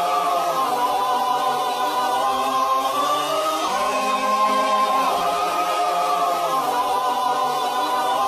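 Many voices singing together in long held notes, like a choir, the chord shifting every second or two.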